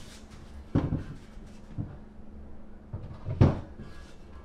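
A small bathroom vanity cabinet with a sink top being shuffled into position: several dull knocks and bumps, the loudest about three and a half seconds in.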